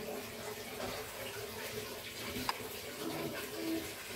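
Thick milk custard spooned onto pudding in a plastic cup: a faint, steady wet pouring sound, with a light click about two and a half seconds in.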